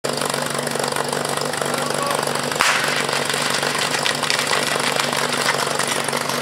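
A portable fire pump's engine idling steadily. About two and a half seconds in comes a sudden sharp sound, the start signal, and the team's running begins.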